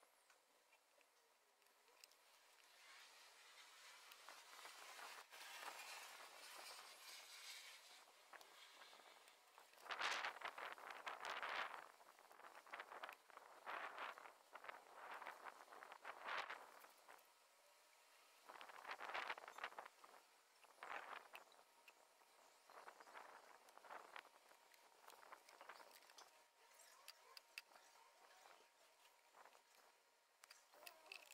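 Faint, scattered scraping and rustling from a soldering iron tip and a plastic strip being worked into the cracked neck of a plastic bottle, melting the strip into the gaps. A soft hiss rises and fades in the first third, then the scratchy sounds come in short bunches.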